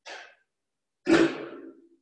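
Kapalbhati breathing: sharp, forceful exhalations through the nose, about one a second. There is a short puff at the start and a louder, longer one about a second in.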